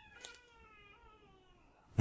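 A cat in another room giving one long, drawn-out yowl that slowly falls in pitch and fades away, faint and distant.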